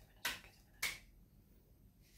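Two sharp, short snaps about six-tenths of a second apart, the end of an evenly paced series, made by hand while a tarot card is being drawn.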